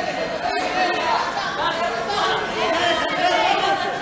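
Crowd chatter: many overlapping voices talking at once, with no single speaker clear.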